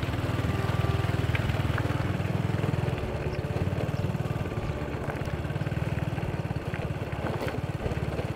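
Small motorbike engine running steadily at low speed, a continuous low putter of rapid firing pulses.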